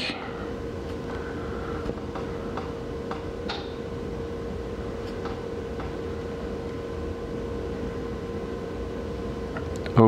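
Room noise with a steady hum, and a few faint taps of a fingertip on a smartphone touchscreen.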